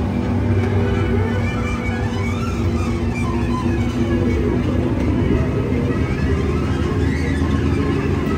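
Music plays over the steady low rumble of the Casey Jr. Circus Train's small open cars running along the track.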